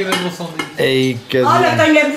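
Dishes, glasses and cutlery clinking on a dinner table, with voices talking over them.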